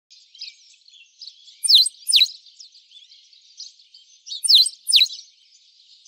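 Birdsong: a steady scatter of small high chirps, with two pairs of loud, sharply falling whistled calls, the second pair about three seconds after the first.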